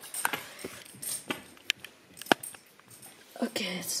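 Window-blind slats clicking and clattering a few times, in separate sharp taps, as they are pushed aside by hand.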